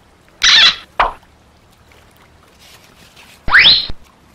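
A short rushing burst about half a second in, a sharp click at about one second, then a quick rising whistle that climbs and holds a high note near the end.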